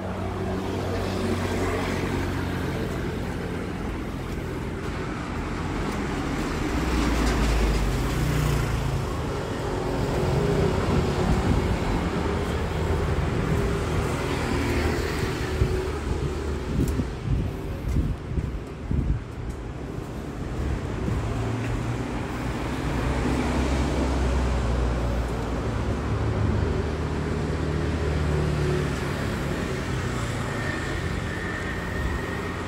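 Road traffic rumble from passing vehicles, swelling and fading as they go by, with a choppy stretch around the middle.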